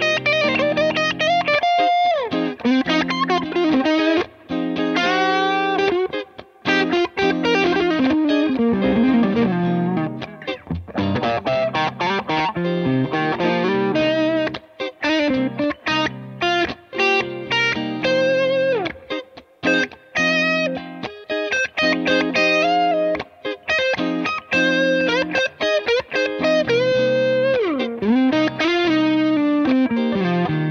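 Gibson Les Paul electric guitar played through a Bad Cat Classic Cat R amp head and Bad Cat speaker cabinet, with an OCD overdrive and TC Flashback delay in the chain. A continuous jam of single-note lead lines and chords, with string bends about nine seconds in and again near the end.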